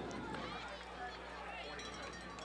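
Faint stadium ambience from the football field: distant voices over a steady low hum.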